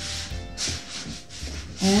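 Sneakers scuffing and sliding on a hard floor in a quick side-to-side rhythm, about two scrapes a second, over quiet background music.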